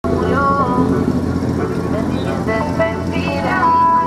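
A car engine idling as the car rolls slowly forward, under a song with a singing voice.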